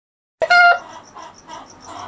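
A chicken calling: a loud, short pitched squawk about half a second in, then softer clucking.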